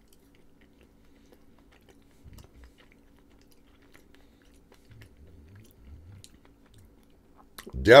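Quiet chewing of a soft chocolate brownie with a few faint low mouth sounds, over a faint steady hum.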